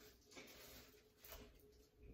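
Near silence, with faint rustling of a plastic grocery bag handled in the hands a couple of times.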